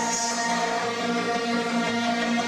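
Live minimal wave / synthpunk band music: held synthesizer tones layered in a steady, unbroken wall of sound.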